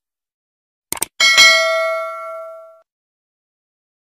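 Subscribe-button animation sound effect: two quick mouse clicks about a second in, then a notification bell chime that rings and fades out over about a second and a half.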